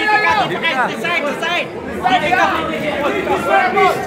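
Several people's voices talking over one another: crowd chatter.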